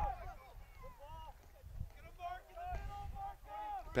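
Faint, distant voices calling out and shouting around a soccer field, in short scattered calls with one longer held call a little past two seconds in.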